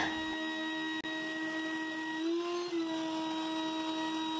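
Vacuum cleaner running with a steady whine, its pitch rising slightly for about half a second a little past the middle before settling back.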